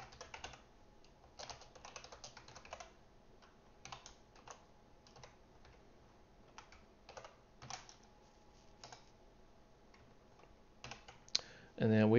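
Typing on a computer keyboard: short, irregular runs of keystrokes with pauses between them, fairly quiet.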